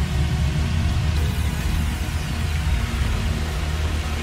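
Dubstep-style electronic music in a build-up section: a sustained deep bass under a noisy hiss, with faint sweeping glides in pitch.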